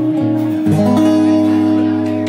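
Acoustic guitar played live: a few picked notes, then a chord struck under a second in and left to ring.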